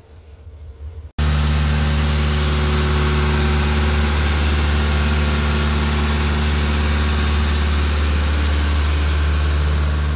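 Engine of a self-propelled rotary road broom (road sweeper) running loud and steady under working load, with a steady hiss over it as the broom sweeps the road surface. It cuts in suddenly about a second in.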